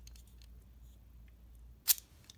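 Light handling of a small plastic toy, then one sharp plastic click near the end as the spring lever on the back of a Spider-Man Happy Meal figure is pushed down, letting its string pull out.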